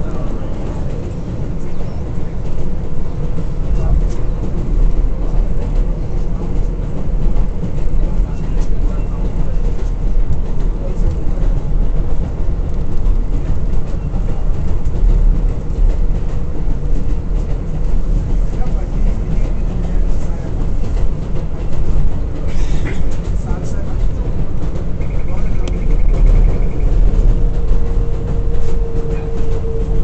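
R188 subway car of a 7 express train running, heard from inside the car: a heavy, continuous rumble of wheels and running gear with a steady whine that grows louder near the end.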